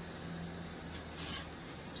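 A brief hiss about a second in from pancake batter in a hot pan as the pan is swirled to spread the batter, over a steady low hum.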